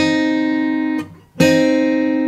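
Acoustic guitar sounding a minor third, C and E-flat plucked together on two separate strings so they ring at once. The two-note chord rings for about a second, is damped, and is struck again a moment later.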